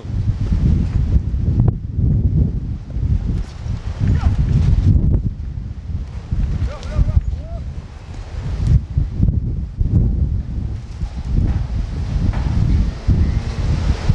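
Strong gusty wind buffeting the microphone: a loud, uneven low rumble that swells and dips throughout.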